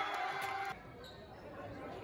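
Voices shouting and cheering in a reverberant school gymnasium as a volleyball point ends. The shouting cuts off abruptly just under a second in, leaving quieter gym noise.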